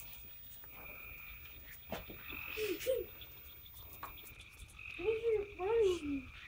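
Dogs whining excitedly in short rising-and-falling whimpers, a pair about two and a half seconds in and a louder run near the end, over a steady high trill that comes and goes in the background.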